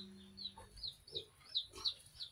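Faint, short, high-pitched calls from small animals, each falling in pitch, about three a second.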